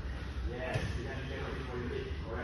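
Indistinct male speech over a steady low hum.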